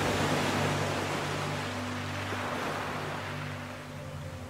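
Ocean waves over a soft, sustained ambient music drone: one wave swells to its loudest about the first second and washes back out over the next few seconds.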